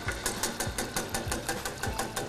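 Wire whisk beating fast in a stainless steel pot of broth, its wires clicking against the metal about seven or eight times a second, as beaten egg yolks are poured in.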